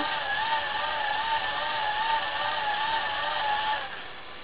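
GoGen 12-volt hand-crank generator being cranked at about one revolution per second, with its cigarette-lighter element plugged in as the load. The crank and generator give a steady whine that wavers slightly in pitch as the handle turns, and it stops just before the end.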